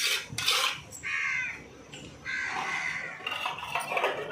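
Two short animal calls, one about a second in and a longer one about two seconds in, after a brief clatter at the start.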